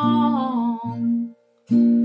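A woman singing a long held note that slides down, over strummed acoustic guitar chords. Both stop for a moment about a second and a half in, then the guitar starts again.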